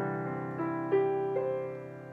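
Digital piano chords: a held chord with three rising notes struck one after another about a second in, the middle one loudest, then dying away. It ends the chord progression in the key of C.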